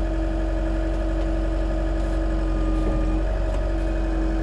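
Mecalac 6MCR compact excavator's engine running steadily at low revs, a continuous hum with a steady tone over it and a brief wobble about three seconds in.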